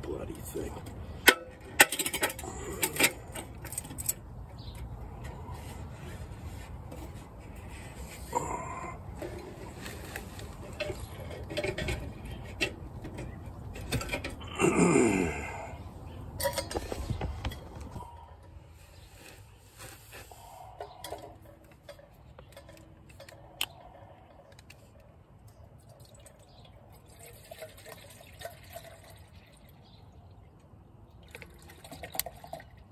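Metal camp cooking pots and a lid being handled and clinking. There are sharp knocks in the first few seconds and a louder clatter about halfway through, then only a few small clicks.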